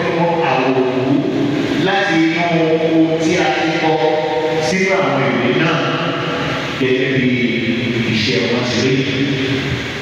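Church congregation singing a hymn together in long held notes, voices in the hall's reverberation.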